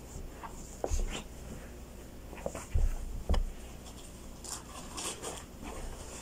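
Handling noises close to a phone lying on a carpeted floor: three dull low thumps in the first half, with light clicks, scrapes and rustles in between.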